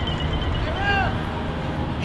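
Steady low outdoor background rumble. About a second in, one short rising-and-falling call sounds over it.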